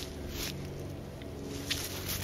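Faint footsteps on a dry pine-needle forest floor, with a couple of soft scuffs.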